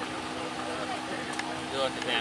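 A steady engine hum under faint crowd noise at an outdoor truck pull, with a man's voice starting near the end.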